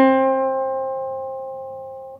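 A single C note plucked on an acoustic guitar, ringing clearly and slowly fading away.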